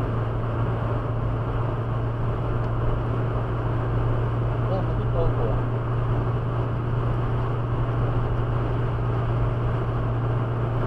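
Steady road and engine noise heard inside a car's cabin at highway speed, about 110 km/h, with a constant low hum under the tyre and wind noise.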